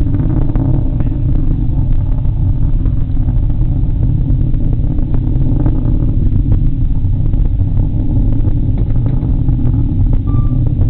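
Delta IV rocket in ascent, heard from far off: a steady low rumble with light crackle, while its first stage and strap-on solid boosters are still burning.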